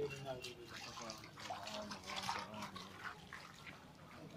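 Footsteps wading through floodwater, the water splashing and sloshing quietly with each step.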